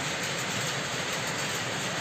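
A shed full of powerlooms running at once: a steady, dense mechanical clatter that stays even throughout.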